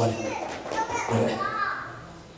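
A man's amplified speech fades out near the start. Then fainter, higher-pitched voices in the hall are heard, like a child speaking, with pitch rising and falling.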